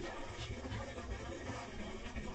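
Background music: a dense, steady mix with a low pulse and no words.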